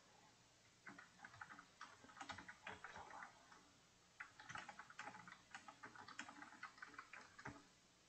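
Faint, quick clicking of typing on a computer keyboard, in two runs: from about a second in, then after a short pause from about four seconds in until near the end.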